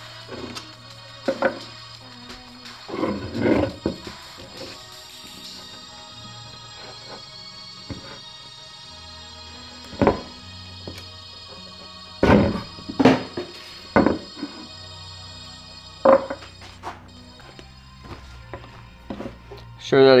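Soft background music with held chords, over which come scattered knocks and clunks as metal fuel injectors and their fuel rail are handled on a plywood board. The injectors are being twisted and pulled out of the rail.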